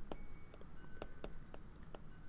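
Light, irregular clicks of a stylus tapping and writing on a tablet, a few per second.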